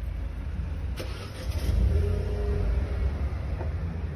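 A car engine running close by, its rumble swelling about two seconds in, with a sharp click about a second in.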